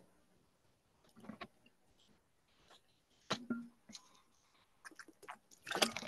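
Quiet room with a few faint short clicks and mouth noises scattered through the pause, a little more of them near the end just before speech resumes.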